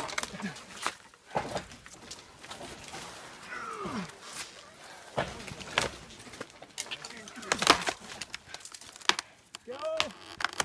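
A dead tree rocked back and forth by hand, giving a series of sharp wooden cracks and snaps, the loudest about three-quarters of the way through. A falling groan comes about four seconds in. The trunk is close to breaking.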